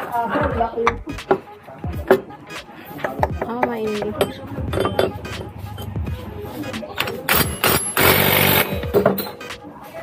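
Metal CVT parts on a scooter clinking as they are fitted by hand, with a short, loud rattling burst about eight seconds in as the assembly is fastened.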